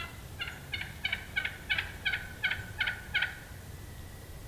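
Wild turkey calling: a run of about nine evenly spaced yelps, roughly three a second, growing louder toward the middle of the series.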